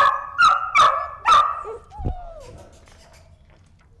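Puppies barking: four quick, high yapping barks in the first second and a half, then a single falling whine.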